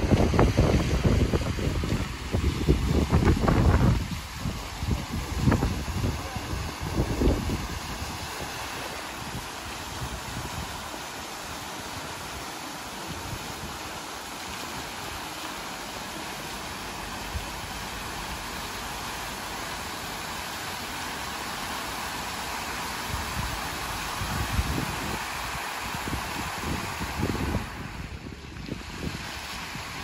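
Fountain jets splashing down into a shallow basin, a steady rushing hiss of water. Wind buffets the microphone in low gusts through the first several seconds and again near the end.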